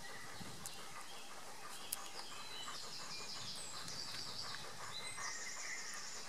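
Faint outdoor background noise, with a small bird singing a quick high-pitched twittering phrase in the middle and a single light click about two seconds in.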